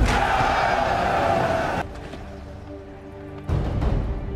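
Film soundtrack: a massed army shouts and roars for about two seconds over a sustained orchestral score. The shout cuts off and the score carries on more quietly, with a dull thump near the end.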